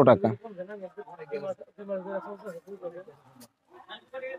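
A man's voice trails off at the start, followed by quieter background talking from other people in the shop.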